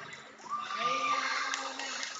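Crowd of children shouting and cheering. About half a second in, one voice rises into a long held shout over the din.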